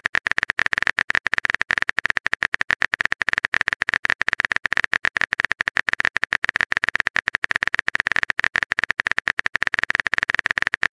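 Phone keyboard typing sound effect: a rapid, even run of short tapping clicks, about ten a second, as a message is typed out letter by letter.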